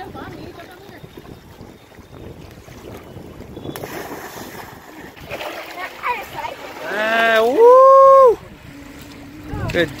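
A loud, high-pitched yell from one voice about seven seconds in, rising and then held for about a second. Before it, a steady wash of river water with wind on the microphone.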